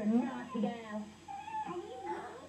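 A young girl's voice making drawn-out, meow-like whining sounds in several short sliding phrases.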